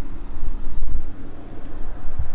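Land Rover Freelander 2's 2.2-litre four-cylinder diesel engine starting up at the press of the start-stop button. It is a deep rumble, loudest about half a second to a second in, that then eases back to idle.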